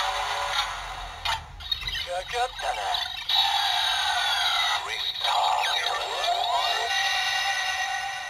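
A DX Gashacon Bugvisor II toy playing its electronic sound effects and voice audio through its small built-in speaker, thin with almost no bass, with sweeping, curving tones and sudden changes as its pause mode runs.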